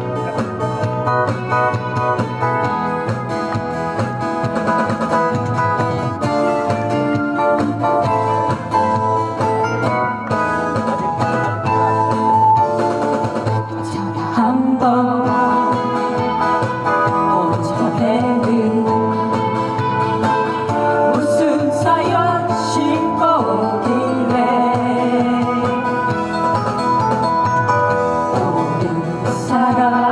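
Amplified live band music: acoustic guitars strumming, with singing coming in about halfway through.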